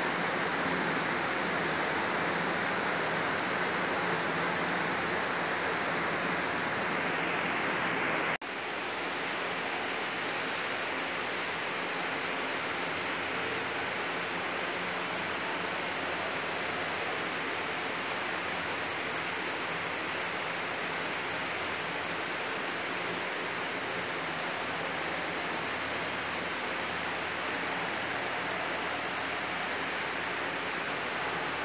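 Steady, even hiss of indoor room noise. About eight seconds in it breaks off for an instant at a cut in the recording and resumes slightly quieter.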